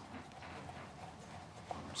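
Chef's knife chopping soft grilled eggplant on a wooden cutting board: faint, soft knocks of the blade on the board, with one sharper knock near the end.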